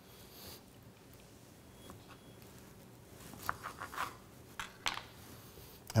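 A knife cutting a small tomato in half on a cutting board: faint handling sounds, then a few short clicks and taps of the blade and the halves against the board about three to five seconds in.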